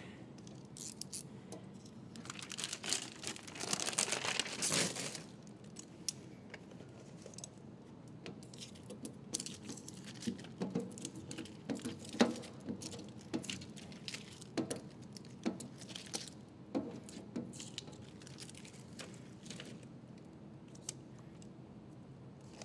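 Window tint film being peeled off a glass board and crumpled by hand: crinkling and crackling in short bursts, with a longer stretch of crinkling about three to five seconds in.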